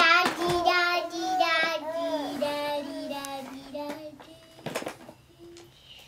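A young girl singing a held, wavering tune that fades out about four seconds in, followed by a short knock.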